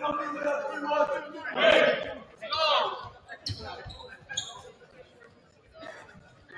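People's voices echoing in a gymnasium, then a basketball bouncing on the hardwood court a few times about halfway through.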